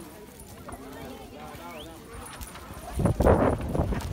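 Faint voices of onlookers, then, about three seconds in, a sudden loud scuffling and knocking right at the microphone as the rider climbs onto the bull and the phone is jostled.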